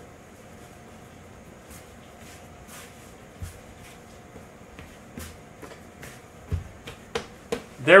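Hands kneading a soft potato gnocchi dough on a floured wooden counter: faint, scattered pats and soft thumps, with a few sharper knocks near the end.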